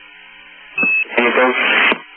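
Space-to-ground radio channel: a steady hiss, then a short high beep about three-quarters of a second in, followed by a burst of voice over the radio that cuts off near the end.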